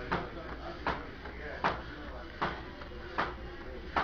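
Heavy battle ropes slapping the gym floor in a steady rhythm, about one slap every three-quarters of a second.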